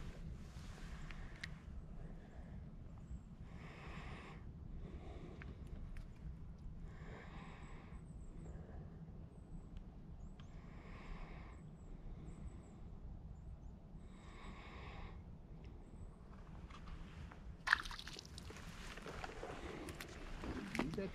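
Faint slow breathing close to the microphone, four soft breaths about three and a half seconds apart, over a quiet outdoor background with a few faint high bird chirps. A single sharp knock comes near the end.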